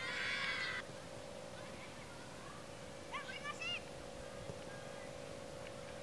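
High-pitched shouts of children on a football field: a call in the first second and another a little after three seconds in, over a steady faint hum.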